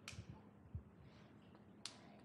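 Near silence: room tone broken by two brief sharp clicks, one at the start and one near the end, with a soft low thump between them.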